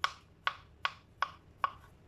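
Kitchen knife chopping mushrooms on a plastic cutting board: five sharp knocks of the blade on the board, about two and a half a second.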